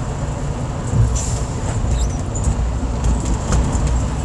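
Semi truck's diesel engine running with a steady low rumble, heard from inside the cab as the truck rolls slowly, with a light knock about a second in and a few small rattles.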